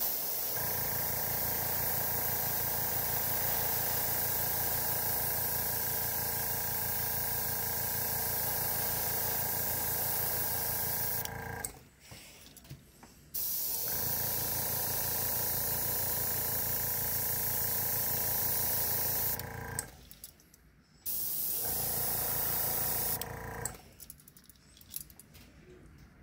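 Gravity-feed airbrush spraying paint: a steady hiss of air with a low hum beneath it, in three passes. A long one, a second of about six seconds after a short pause, and a shorter, weaker one near the end.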